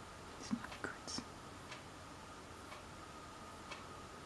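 Soft whispered muttering under the breath, in short bits between about half a second and a second in, then quiet room tone with a faint steady hum.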